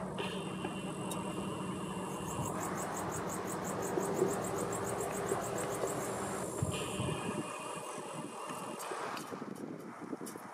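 Summer outdoor ambience: a low, steady engine hum that fades out about seven seconds in, with insects chirping in a rapid, evenly spaced series through the middle.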